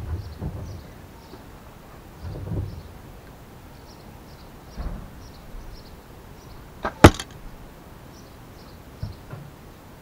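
A carbon arrow shot from a horsebow strikes the archery target close by with one sharp smack about seven seconds in, a faint snap coming a split second before it. A few soft low thumps come earlier.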